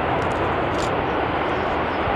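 Jet engines of a Lufthansa Airbus A330 running as it rolls along the runway: a loud, steady rush of engine noise.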